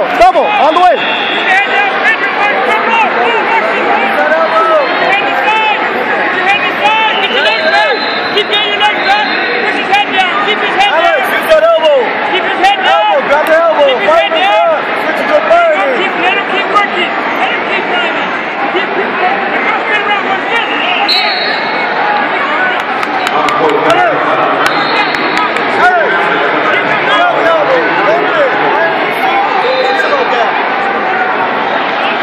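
Coaches and spectators shouting over the hubbub of a big arena crowd during a youth wrestling match, with scattered short knocks.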